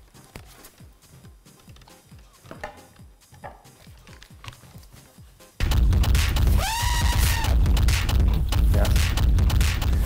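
Faint handling sounds of a vinyl record being taken out and set on a turntable, then about five and a half seconds in a track starts abruptly and loud from the record, with heavy bass and high electronic tones that bend up and fall back.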